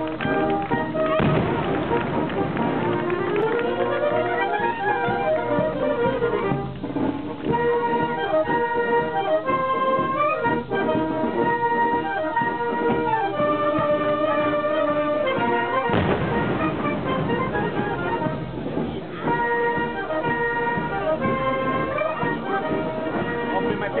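A band with brass instruments playing festive melodic music in several parts, over crowd voices.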